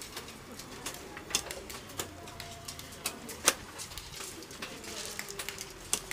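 Irregular sharp clicks, one or two a second, as arrows strike around a bamboo teer target during a shooting round. Pigeons coo faintly underneath.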